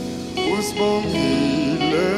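A live band playing a song: electric guitar, bass guitar and keyboard, with a male voice singing over them in short phrases.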